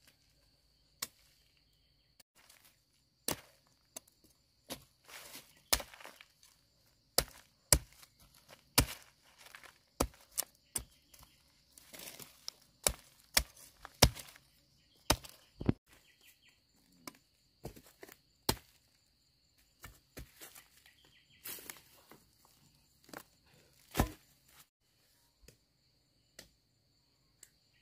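Machete blade chopping and scraping fresh cassava roots: irregular sharp knocks, some in quick pairs, with rasping scrapes as the bark is peeled away.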